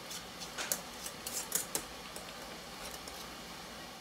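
Metal screw band being twisted onto a glass canning jar over its lid: a series of short clicks and scrapes of metal on glass threads in the first two seconds or so.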